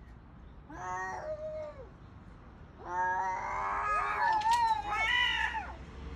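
Cats yowling at each other in a hostile standoff: a short wavering yowl about a second in, then a longer, louder one that wavers up and down from about three seconds in.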